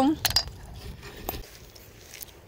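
Wooden chopsticks clicking against a stainless steel pot of cooked rice: a few light clicks just after the start and one more a little over a second in.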